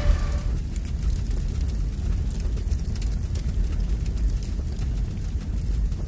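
Deep, steady rumbling drone with faint scattered crackles: the fire-and-embers sound bed of an outro card. A music tail fades out within the first half second.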